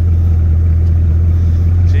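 Bugatti Chiron's quad-turbocharged W16 engine idling with a steady, deep hum.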